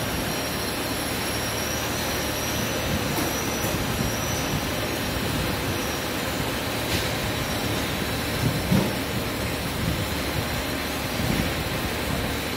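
Hydraulic power unit of a homemade cargo lift, electric motor and pump running steadily while the platform is raised, with a faint high steady whine. A brief knock sounds about two-thirds of the way through.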